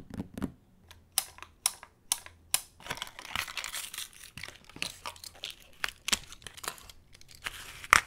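Hairbands and plastic claw clips being taken off their cardboard packaging cards: paper tearing and crinkling with a run of sharp plastic clicks, denser rustling in the middle and the loudest snap near the end.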